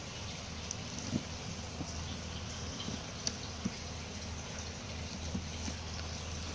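Faint, scattered ticks and crackles over a steady low hum and hiss: a hand stirring through dry compost media full of black soldier fly larvae.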